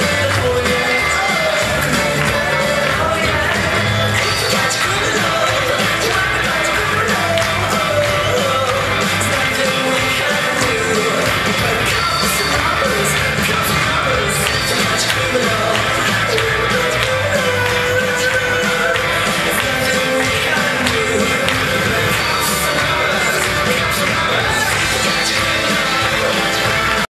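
Rock 'n' roll song with a singing voice, played loud and steady.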